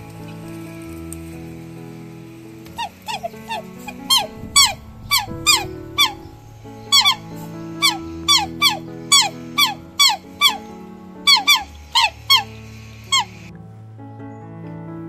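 Black swans calling over background music: a long series of short squeaky calls, each falling in pitch, beginning about three seconds in and cutting off abruptly near the end.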